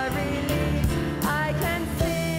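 Worship band playing a contemporary hymn, a woman singing the lead melody over piano, electric guitar and drums.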